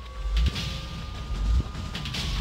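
Dramatic news sound-design sting: a low rumble with deep booms about once a second, under a thin steady tone.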